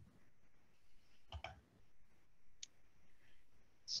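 Quiet room tone with a few faint, sharp clicks, about one and a half and two and a half seconds in.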